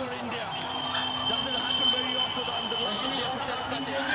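Stadium crowd cheering and shouting, with many voices blending together. A long steady high tone is held for about three seconds through the middle of it.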